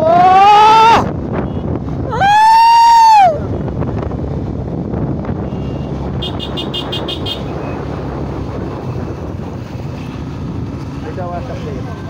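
Two loud, high whooping shouts close to the microphone, the first rising in pitch and the second held for about a second, over steady wind and riding noise from the two-wheeler. About six seconds in comes a short burst of rapid high beeping.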